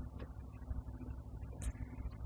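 Low, steady background rumble with a faint hum, broken by two brief faint clicks, one just after the start and one a little past halfway.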